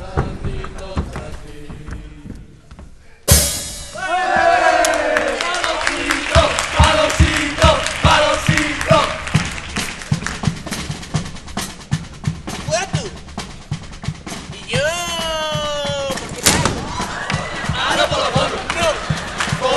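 Murga percussion, a bass drum with snare, beating a steady rhythm under shouting and chanting voices. It starts suddenly a few seconds in. Near the end comes a long pitched cry, then a sharp hit.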